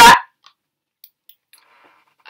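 The loud tail of a word spoken through a handheld megaphone, cut off about a quarter second in. Then near silence with a few faint clicks.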